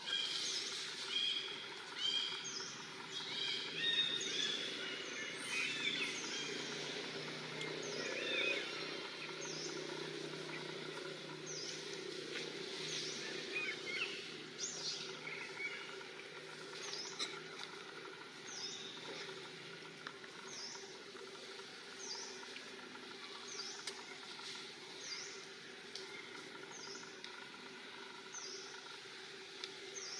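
Outdoor forest ambience with a bird calling: short, high notes that slur downward, repeated about once a second, with a quicker run of notes in the first few seconds, over a steady background hiss.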